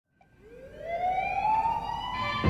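A single siren-like tone fades in from silence and glides steadily upward in pitch, opening a soul song's intro before the beat comes in.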